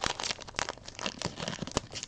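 Foil wrapper of a Panini Prizm WWE trading-card pack crinkling in the hands as it is handled and opened: a quick, irregular run of sharp crackles.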